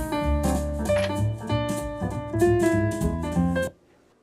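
Piano-led jazz with drums playing through a floor-standing speaker driven by a modified SWTP Tigersaurus amplifier. The music cuts off suddenly near the end.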